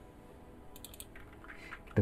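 A few quiet computer keyboard keystrokes, a quick cluster just under a second in and a few fainter clicks after it.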